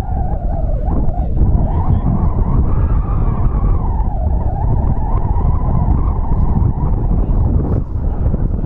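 Wind buffeting the camera microphone: a heavy, continuous rumble with a wavering higher tone that rises and falls over it.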